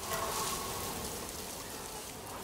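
A steady, even hiss of noise like rain falling.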